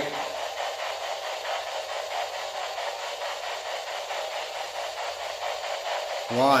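Steady static hiss with a faint, rapid flicker, like an untuned radio, and no voice in it.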